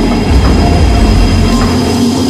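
Indian Railways WDG4D diesel-electric locomotive running slowly past at close range. Its engine rumbles loudly over the noise of its wheels on the rails.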